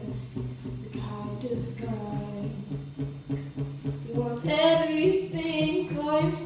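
A young girl singing a slow ballad to her own acoustic guitar accompaniment, the guitar keeping a steady low strumming pattern under the melody. Her voice grows louder and fuller near the end.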